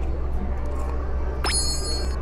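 A short, high bell-like ding with a sharp start about one and a half seconds in, ringing for about half a second before cutting off, over a steady low background hum.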